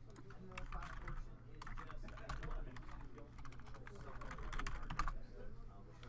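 Typing on a computer keyboard: a run of irregular keystrokes that stops about five seconds in, over a steady low hum.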